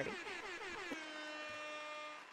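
Party horn noisemaker sound effect, edited in as a celebratory noise: a buzzy tone with many overtones that wavers at first, then holds steady for about the last second.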